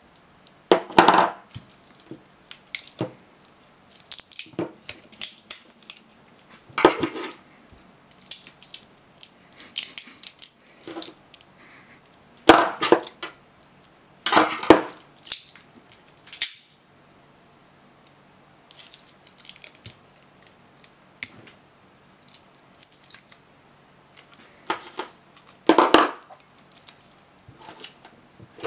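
Samsung SDI 18650 lithium-ion cells and their nickel strips and tape being handled and pulled apart from a laptop battery pack. The result is irregular clicks, scrapes and clatter, with a few louder bursts and a short lull in the middle.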